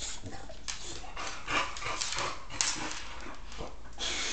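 A boxer dog dropping to the floor and lying on its side on ceramic tile: a string of short, irregular scuffs and clicks from its claws and body on the tiles, mixed with breathy dog sounds.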